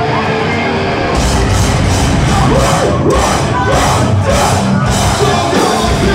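Hardcore band playing live, with distorted guitars and drums at a steady high level; the drums come in harder about a second in.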